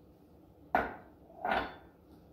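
Two knocks of a glass measuring cup, the first sharp with a short ring, the second softer, about three-quarters of a second apart. They come as the cup is emptied of oats into a stainless steel mixing bowl and set down on a stone countertop.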